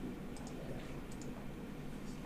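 Computer mouse clicking: two quick double clicks, one about half a second in and another just past a second, over faint low room noise.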